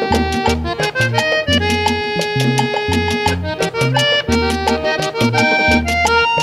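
Instrumental break of a Colombian cumbia played by an accordion conjunto: the diatonic accordion carries the melody over a pulsing bass line and percussion.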